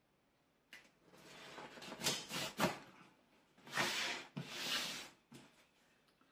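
Knife cutting along the top seam of a cardboard box: three scraping strokes of a second or so each, with a light tap near the start and another near the end.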